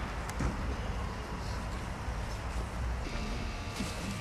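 Open-air ambience on a paved square: a steady low rumble with faint scattered background sounds, and a single sharp click about a third of a second in.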